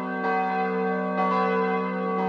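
Church bells ringing, many tones sounding together and held steady.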